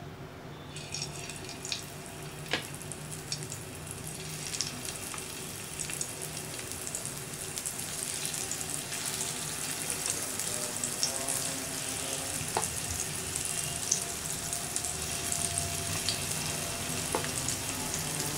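Masala-coated elephant foot yam slices sizzling and crackling in hot oil on an iron tawa. The sizzle starts about a second in and slowly grows louder, with a few sharp clicks along the way.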